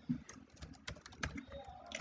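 Computer keyboard typing: a handful of light, irregular key clicks as a word is typed.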